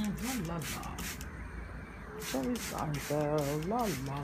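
Hand-held plastic trigger spray bottle misting plants with water: a quick run of short sprays, about four a second, with a brief pause in the middle.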